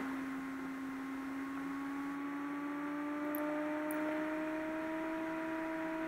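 Computer DVD drive spinning a disc as it reads it: a steady whine of several tones that slowly rise in pitch as the disc speeds up.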